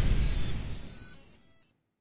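The dying tail of a deep boom from a closing logo-sting sound effect, with a faint ringing on top, fading away and cutting off after about a second and a half.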